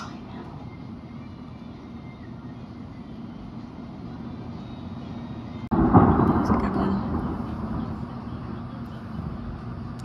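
Thunder: after a steady hiss of the storm, a sudden loud clap about six seconds in rolls into a low rumble that fades over several seconds. It is the first thunder of the storm.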